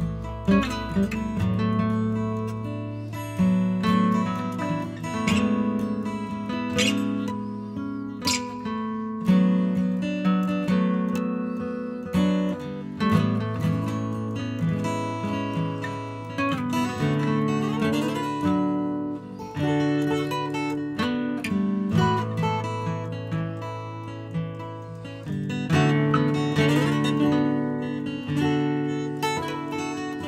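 An instrumental tune on acoustic guitar, plucked and strummed over held low notes.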